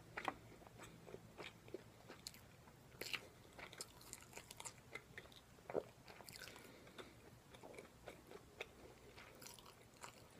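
A person chewing a crisp fried, breaded menchi katsu close to the microphone, with irregular sharp crunches and mouth clicks.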